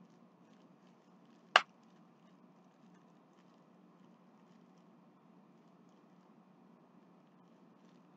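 Hands unwrapping a tightly wrapped mailed package: faint handling sounds over quiet room tone, with one short sharp snap about one and a half seconds in.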